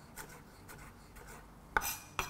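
Chef's knife chopping fresh ginger on a wooden chopping board: a few soft knife taps about twice a second, then one louder knock near the end.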